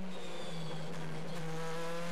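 BMW M4 DTM race car's 4-litre V8 heard through the onboard camera: a steady engine drone whose pitch sinks slowly.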